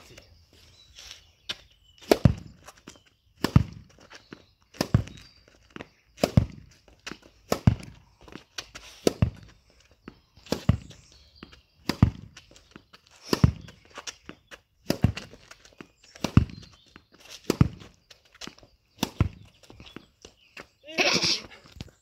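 Tennis ball rallied alone against an upright mattress used as a rebound wall: a steady run of sharp racket-string strikes, about one every second and a half, with softer knocks of the ball on the mattress and the ground between them.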